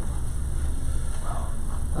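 Steady low hum of room background noise, with a brief faint sound about a second and a half in.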